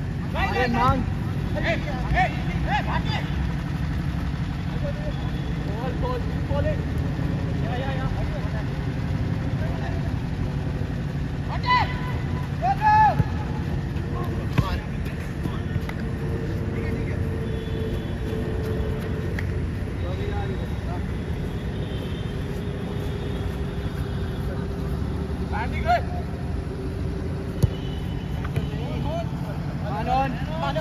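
Football players shouting and calling to each other during play, over a steady low rumble. There are a few sharp knocks of the ball being kicked, one in the middle and one near the end.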